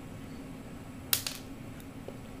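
Small plastic parts being handled on a workbench: a quick cluster of two or three sharp clicks about a second in, over a steady low hum.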